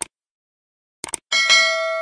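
Subscribe-animation sound effects: a quick double mouse click, another double click about a second later, then a notification bell ding that rings on and slowly fades.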